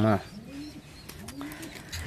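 Domestic pigeon cooing twice, each coo a short low call that rises and falls, with a few faint clicks between them.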